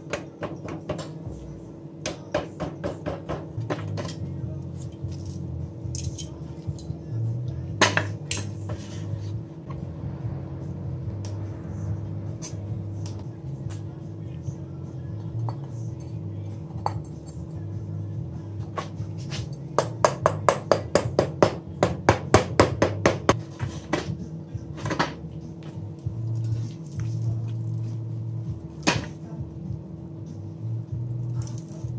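A mallet striking the steel canister of a Kawasaki GTR 1000 exhaust muffler: a short run of blows early, a few single knocks, then a fast run of about four strikes a second around two-thirds of the way through.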